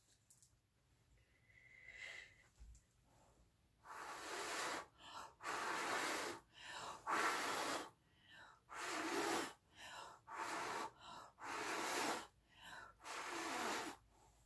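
A person blowing hard by mouth onto wet acrylic paint. Repeated airy puffs of breath start about four seconds in, each about half a second to a second long, with quick breaths in between. The blowing pushes the paint outward into blooms.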